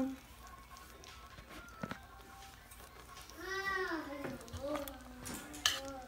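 A child's voice in the background: one drawn-out call that rises and falls about halfway through, then a shorter, fainter one, over quiet room tone. A faint click comes about two seconds in.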